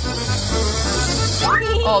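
Hissing sound effect for a bubble-gum bubble being blown up, over background music with a steady bass beat; the hiss cuts off about a second and a half in.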